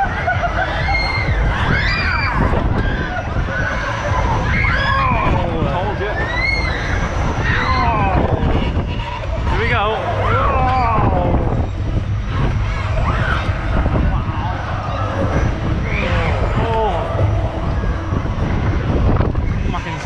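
Riders' voices on a fast-spinning fairground ride: whoops and shouts that rise and fall in pitch, over a constant low rumble of the moving ride and air on the microphone.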